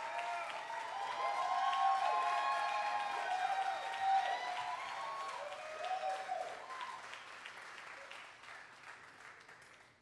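Audience applauding and cheering, with whoops over the clapping. It is loudest in the first half and dies away over the last few seconds.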